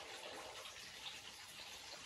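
Faint, steady background hiss with no distinct sound standing out.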